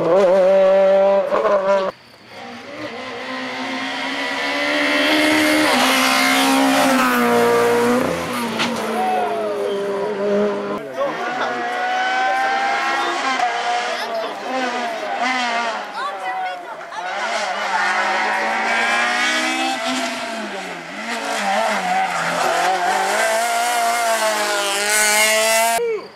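Rally cars on a tarmac stage driven hard, engines revving up and dropping through gear changes, with tyre squeal. It comes as several separate passes, broken by abrupt cuts.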